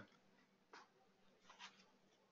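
Near silence: room tone with two faint, brief ticks, one under a second in and one about a second and a half in.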